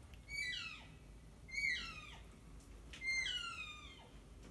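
Elk calling: three high, squealing mews, each falling in pitch over about half a second, spaced about a second and a half apart.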